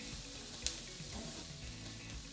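Chopped onions and thyme sizzling faintly in a frying pan over raised heat, with a single sharp tap about two-thirds of a second in.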